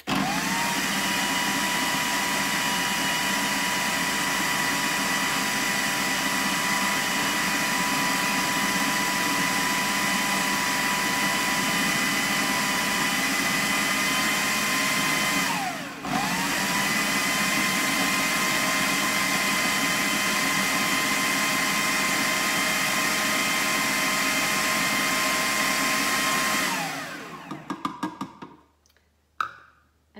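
Food processor motor running with a steady whine, blending basil pesto while olive oil is added through the feed tube. It spins up at the start, stops briefly about halfway and starts again, then winds down near the end, followed by a few light knocks.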